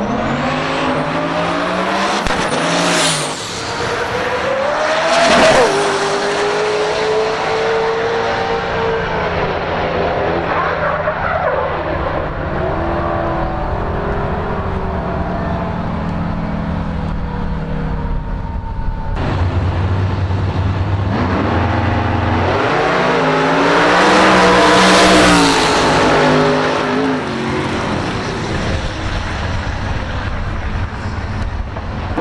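Drag racing cars on drag radials launching hard off the line, their engines revving up through a couple of shifts in the first few seconds and then running on down the track. About two-thirds of the way in, another car's full-throttle pass builds to the loudest point and then fades.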